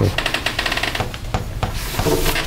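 Chalk scratching on a blackboard as a formula is written: a rapid chattering scrape through the first second, lighter strokes after it, and another scrape near the end.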